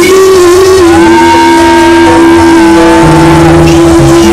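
Live band playing loud, with a singer holding one long, steady note that swoops up into pitch just as it begins.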